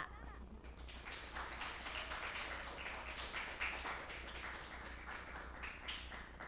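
Faint applause from a few people clapping, a dense irregular patter of hand claps that starts about a second in.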